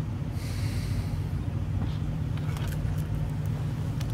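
A low steady hum, with a short breathy hiss about half a second in and a few faint clicks near the end.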